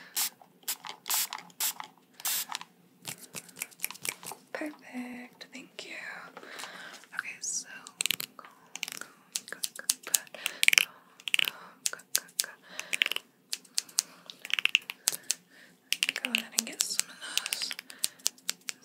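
A plastic trigger spray bottle misting several quick times close to the microphone in the first couple of seconds, wetting hair before a cut. After that, a plastic comb is drawn and tapped close to the microphone, making rustling and clicking sounds.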